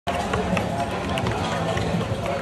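Indistinct voices and busy street-stall background noise, with a few light clicks.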